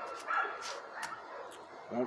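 A dog barking several times in short yips.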